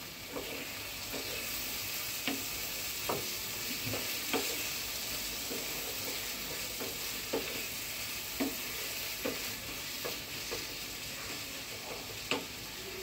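Wooden spatula stirring and scraping a thick spiced dried-fish curry around a non-stick frying pan, with a steady sizzle of frying underneath. The scrapes come irregularly, about once a second.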